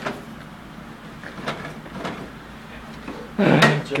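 A few faint light taps and knocks of objects being handled, then a short loud burst of a man's voice near the end.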